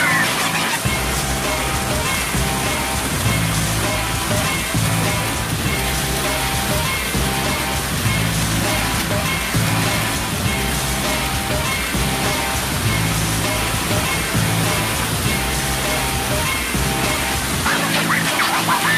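Background music with a repeating bass line that comes in about a second in. Water pouring over a pool step and splashing can be heard beneath it.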